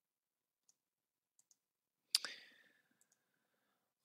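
A single sharp computer mouse click about halfway through, dying away within half a second, with a few much fainter ticks before and after it.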